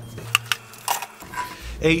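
A few light, sharp clicks, irregularly spaced, in a pause between words.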